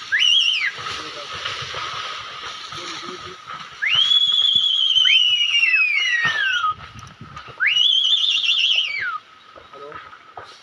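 A series of high whistles. Each one rises quickly, holds, then falls away over one to three seconds, with some overlapping near the middle and one wavering about eight seconds in. A faint steady high tone runs behind them.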